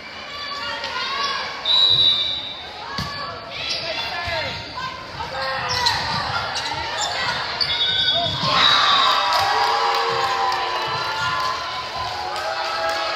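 Volleyball rally in a gym: the ball is struck sharply several times, each hit echoing in the hall, while players call out and spectators chatter.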